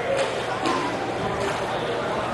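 Roller hockey play on an indoor rink: faint distant players' voices over the rink's background noise, with a couple of light clacks of sticks or puck in the first second.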